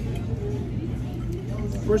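Restaurant dining-room background: a steady low hum with faint background murmur, then a man starts to speak near the end.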